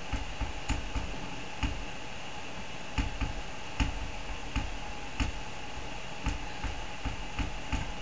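Scattered faint clicks and soft low knocks at an irregular pace of about one a second, over a steady background hiss.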